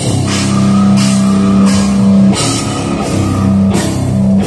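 Death metal band playing live through a festival PA: distorted guitars and bass holding low notes over drums, with cymbal crashes coming and going.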